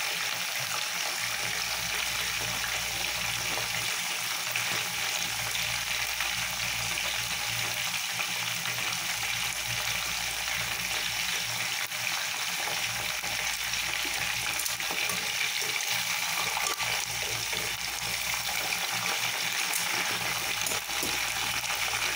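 Chicken pieces deep-frying in an aluminium pot of hot oil, a steady sizzle and bubbling as the water cooks out of the meat. A low steady hum runs underneath.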